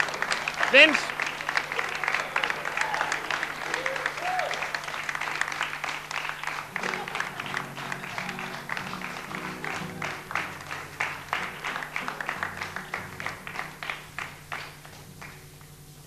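Studio audience applauding, with a couple of shouts and whoops about a second in and again around four seconds; the clapping thins out and fades toward the end.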